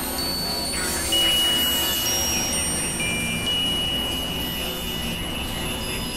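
Experimental electronic noise music: layered steady high pure tones at several pitches come in and drop out over a dense hiss-and-rumble drone. A louder tone enters about a second in.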